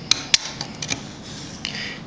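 Leatherman Wave can opener working a tin can's metal lid free: a handful of sharp, irregular metallic clicks and scrapes, the loudest in the first half-second.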